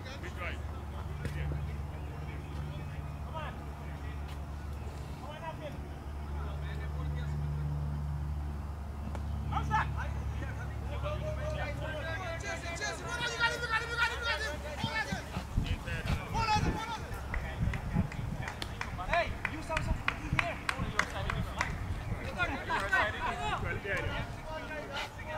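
Players' voices calling and shouting across a cricket field, with a steady low hum through the first half that stops about fifteen seconds in. Several sharp knocks come in the second half.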